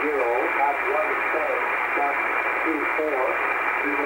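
Trenton Volmet aviation weather voice broadcast received on shortwave in upper sideband through a communications receiver: a thin, muffled voice, hard to make out, over steady static hiss.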